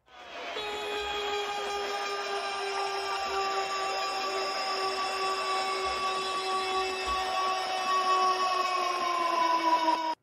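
A long, steady horn-like blast over a noisy hiss, added as a sound effect, sagging slightly in pitch near the end and cutting off abruptly.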